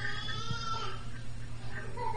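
A faint, high-pitched, wavering vocal sound lasting about a second, over the recording's steady low hum.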